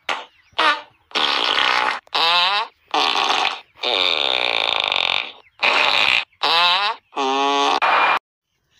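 A string of about nine loud fart noises, one after another. Some are short and some are drawn out for a second or more, with a wobbling, bending pitch.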